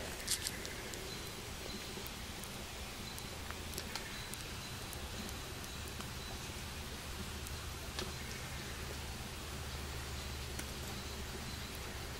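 Quiet outdoor background: a steady low hum and faint hiss, with a few soft clicks and light rustles of hand handling.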